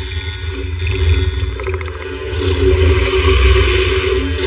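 Action-film soundtrack mix: a steady deep bass with sustained tones, and a loud rushing noise that sets in about halfway through.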